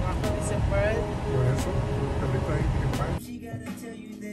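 A voice talking over the steady low rumble of a running car, heard from inside the car. About three seconds in it cuts off abruptly and rap music takes over.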